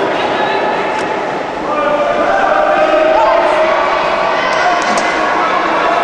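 Voices of onlookers shouting in a large echoing sports hall during a judo bout, the calls swelling and holding from about two seconds in.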